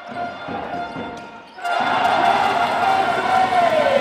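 Basketball arena game sound under background music: faint court noise, then about a second and a half in a sudden loud crowd cheer that carries on, with one strong voice-like tone falling near the end, following a jump shot.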